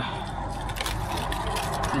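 Aluminium foil crinkling as a sandwich is unwrapped by hand: a dense, irregular run of small crackles.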